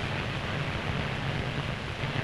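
Steady rushing noise with a low rumble beneath, even throughout with no distinct events, on an old newsreel optical soundtrack.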